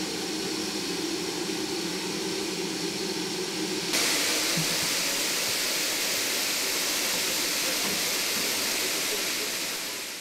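Steam hissing from a standing GWR Prairie tank locomotive. About four seconds in, the sound changes abruptly to a louder, steady hiss.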